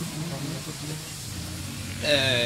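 A steady low hum under an even background noise, with no distinct event.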